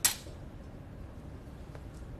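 A single sharp clink of a metal surgical instrument at the very start, fading within a fraction of a second. After it there is only a low steady room hum.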